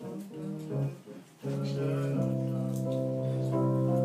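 Music from the song's voice-memo demo playing back: a few short notes with gaps, then a steady sustained chord from about a second and a half in.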